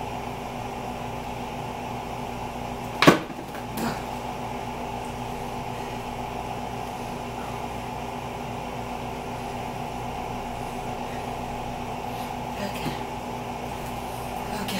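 A steady machine-like hum from the room, with a sharp knock about three seconds in and a softer one just under a second later.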